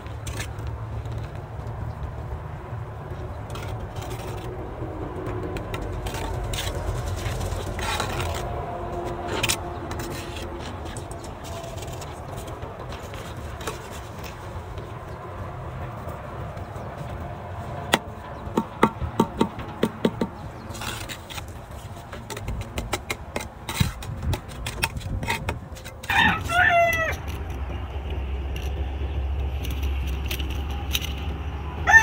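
A rooster crowing once near the end. Before it comes a quick run of sharp taps as bricks are set into mortar.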